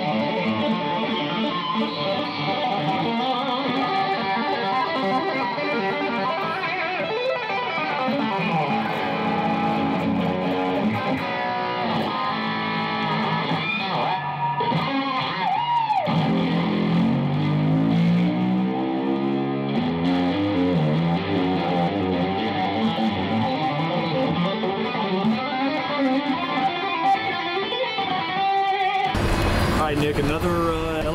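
Electric guitar, a red Shabat custom Strat-style guitar played through a Line 6 Helix and PowerCab, playing a run of lead lines with swooping pitch bends midway. It cuts off suddenly about a second before the end.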